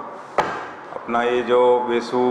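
One sharp click about half a second in, then a man's voice from about a second in.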